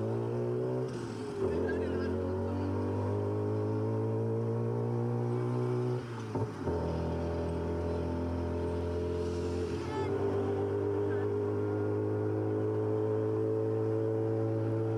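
Tuk-tuk engine running as it drives in traffic, its note dropping out briefly about a second in and again about six seconds in, then climbing slowly as it picks up speed.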